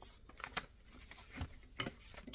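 Paper-backed quilt pieces (foundation paper with fabric sewn on) being picked up and handled on a cutting mat: a few faint paper rustles and light taps, the clearest near the end.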